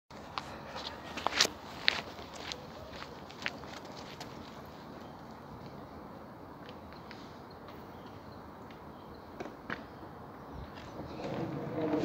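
A few sharp clacks and footsteps on asphalt in the first few seconds, with two more clicks later. Near the end the rolling rumble of skateboard wheels on asphalt swells as the board approaches.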